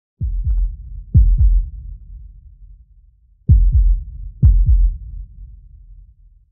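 Heartbeat sound effect: low, booming double thumps in a lub-dub rhythm. Two heartbeats come about a second apart, then a pause of about two seconds, then two more.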